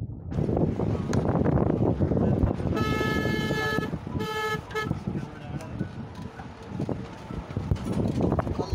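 A vehicle horn honks twice, a steady honk of about a second about three seconds in and a shorter one just after. Underneath runs the continuous rumble of a vehicle driving on a rough mountain road.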